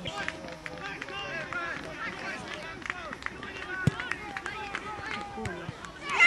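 Overlapping voices of players and touchline spectators calling out across an outdoor youth football pitch, none of it clear words, with a few short knocks; the sharpest comes about four seconds in.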